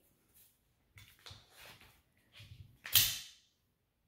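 Faint handling rustles, then a single sharp snap with a short swish about three seconds in: a black folding pocket knife's blade flicking open.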